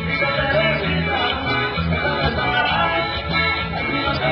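Live Latin dance music played by a band, with singing over a steady, repeating bass line.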